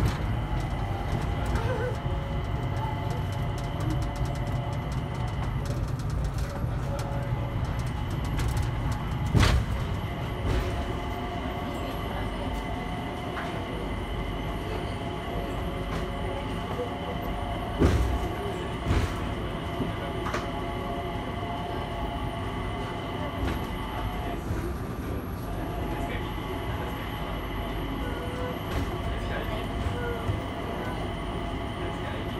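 Inside a Mitsubishi Crystal Mover rubber-tyred people-mover car on the move: a steady low running rumble with several steady high tones over it. A few sharp knocks stand out, the loudest about a third of the way in and another pair a little past the middle.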